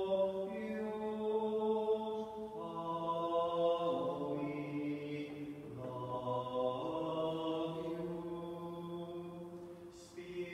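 Slow, chant-like sacred vocal music: long held notes in several voices at once, moving to a new pitch every second or two, with a phrase ending near the end.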